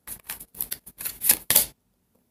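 A tarot deck being shuffled by hand: a quick, irregular run of card slaps and rustles that stops short near the end.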